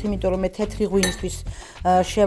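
A glass clink about a second in, with a short ring, amid talk.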